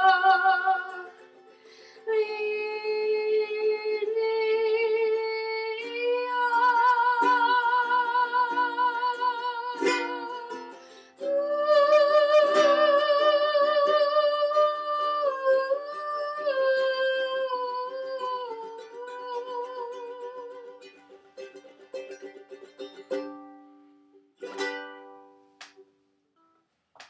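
A woman singing a Hawaiian song in long held notes with vibrato, accompanied by a strummed ukulele. The voice falls away near the end and the ukulele closes with a few last strums.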